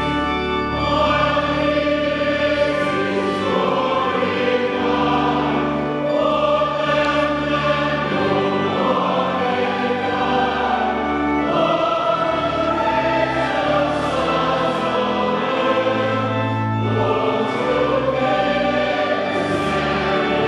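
Choir singing a hymn with organ accompaniment: sustained sung chords moving from one to the next every second or so over steady low organ bass notes, with the clergy singing along.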